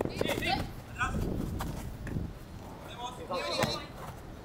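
Players calling out briefly during a small-sided football game on artificial turf, with a few scattered thuds of feet and ball.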